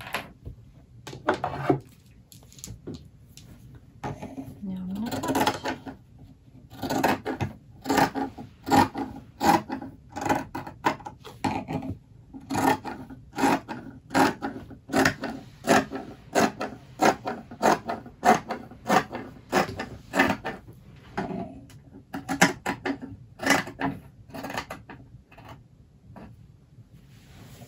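Dressmaker's shears cutting through fabric: a steady run of snips, about two a second, from about seven seconds in until near the end, after some rustling of the cloth at the start.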